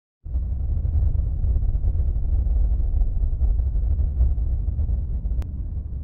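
A deep, steady rumbling drone that starts just after the opening and eases off slightly toward the end, with one sharp click near the end.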